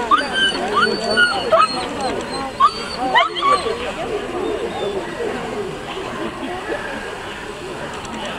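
German shepherd dog whining and yipping in quick, high-pitched rising cries, thickest in the first three seconds and tapering off after, typical of an excited dog held back by its handler.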